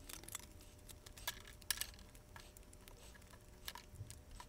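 Thin aluminium plates and paper being handled on a bench while plastic spring clamps are put on them: a few faint, irregular clicks and rustles.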